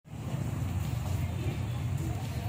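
A vehicle engine idling: a steady low rumble that fades in at the very start. Faint voices sit under it.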